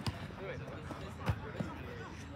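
A football being kicked on an artificial-turf pitch: three sharp thuds, the loudest about a second and a quarter in.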